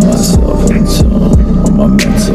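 Instrumental stretch of a smooth R&B beat: deep bass notes sliding down in pitch about three times over a sustained low drone, with short high percussive ticks.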